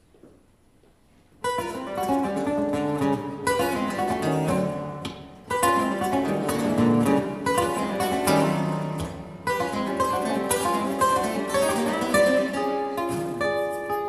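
Acoustic guitars, a nylon-string and a steel-string, played live: after about a second and a half of near silence they come in suddenly with a loud chord and run into a dense passage of plucked notes and strummed accents, with sharp new attacks twice more and longer held notes near the end.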